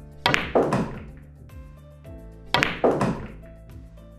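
Pool balls on a pool table: the cue tip strikes the cue ball and the cue ball clacks into the object ball a fraction of a second later, on a low-left draw shot. A second pair of sharp ball clicks comes about two and a half seconds in.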